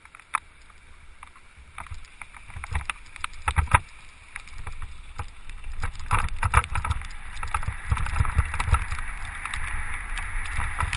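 Rolling ride over a rough gravel track: wheels crunching and jolting over stones with rattling knocks and a low rumble, getting louder as the speed picks up. Two sharp knocks come right at the start.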